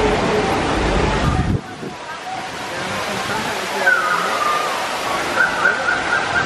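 Steady rushing of flowing water with the indistinct chatter of other people. About a second and a half in, the low rumble cuts off suddenly and the sound turns thinner, with a few short high chirps later on.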